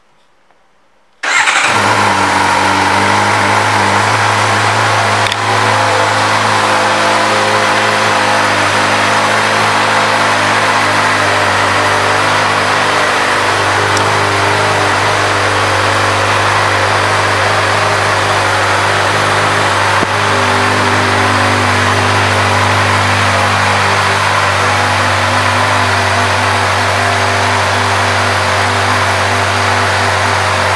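A 2024 Suzuki GSX-R600's inline-four engine starts about a second in and then idles steadily.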